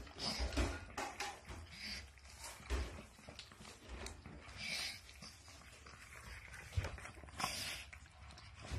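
A pug's breathing noises in irregular puffs of air, with a few low bumps.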